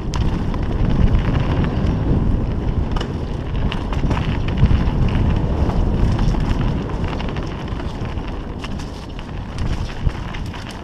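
Wind buffeting the microphone of a helmet-mounted camera on a fast mountain-bike descent of a dirt trail, a loud, deep rumble throughout, with scattered short clicks and rattles from the bike.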